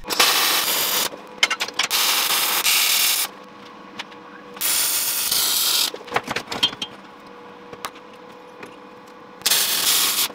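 Wire-feed (MIG) welder running short welds on a steel tube frame: four bursts of steady arc crackle, each about a second long, with quieter pauses and a few short clicks between them.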